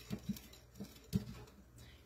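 Metal spoon stirring sugar into water in a plastic measuring cup, tapping against the sides in a run of light, irregular clicks, the sharpest just over a second in.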